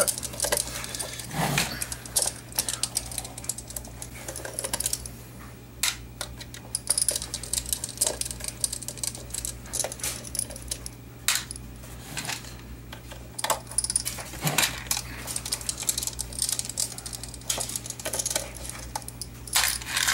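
Screwdriver work on a car amplifier's metal case: scattered small clicks and metallic clinks as the screws of the top cover are turned out and handled.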